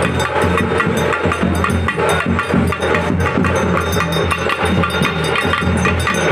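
Procession percussion: drums beaten in a fast, dense rhythm over a steady low hum.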